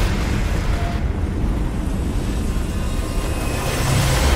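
Helicopter engine and rotor noise as a loud, steady rumble in a film's action sound mix.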